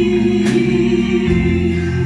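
Live blues band playing a gospel hymn: a woman singing over electric guitars and drums, with a long sustained note running through.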